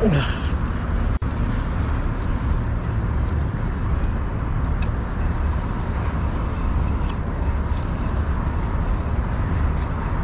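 Steady low rumble of wind and distant road traffic, with faint scattered light ticks and a brief falling whoosh right at the start.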